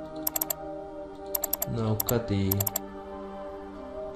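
Computer keyboard typing in four short bursts of quick clicks, over steady background music.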